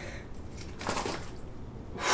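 A phone dropped on a coiled tether clipped to a life jacket: a brief light rattle about a second in as it falls and the tether catches it short of the floor.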